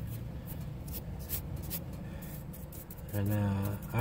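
Gloved hand rubbing and smoothing wet sand-and-mortar mix, a soft gritty scraping in short, irregular strokes.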